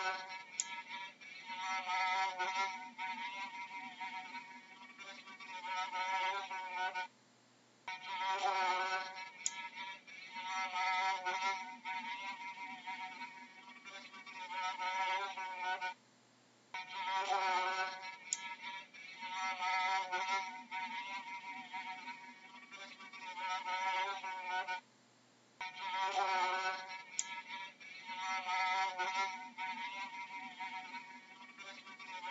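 Fly buzzing in flight, a whine that wavers up and down in pitch. The buzz is a recording of about nine seconds played on a loop, with a short break between repeats.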